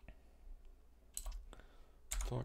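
A few scattered clicks of computer keyboard keys being typed, the loudest pair a little past the middle.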